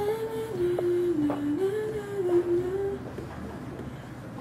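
A woman humming a short tune with her lips closed. The pitch slides and steps up and down for about three seconds, then stops. Two faint taps fall in the middle of it.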